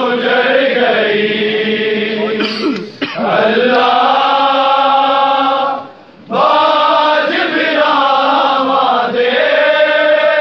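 Male voices chanting a Shia noha (mourning lament) in long drawn-out sung lines without instruments, with short breaks about three and six seconds in.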